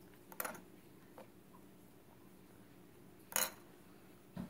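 Plastic Play-Doh tools and pieces clicking against a glass tabletop: a sharp click about half a second in, a faint one a little later, and a louder one near the end, over a faint steady hum.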